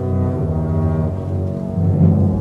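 Opera orchestra playing held low brass chords, trombones over strings, with the harmony shifting once or twice.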